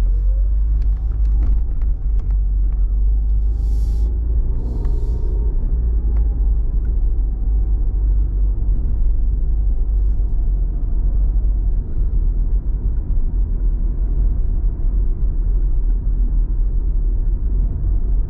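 Car cabin noise while driving: a steady, loud low rumble of engine and tyres on the road, with a faint whine that rises and falls.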